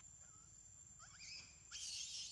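Baby macaque calling: a few short rising squeaks, then a loud high-pitched squeal that begins near the end. A faint steady high whine runs underneath.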